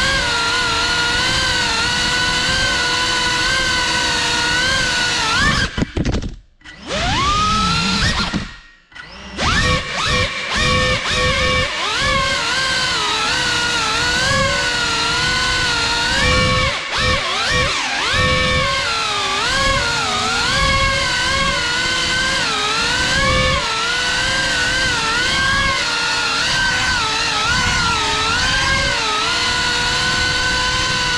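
Brushless motors and ducted propellers of a GEPRC CineLog35 cinewhoop FPV drone, recorded by the camera riding on it: a loud whine of several tones that rises and falls with the throttle. It cuts almost to nothing twice, about six and nine seconds in, and spools back up each time.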